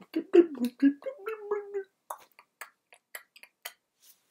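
A man's voice making garbled, wordless vocal sounds for about two seconds, followed by a run of sharp, separate clicks.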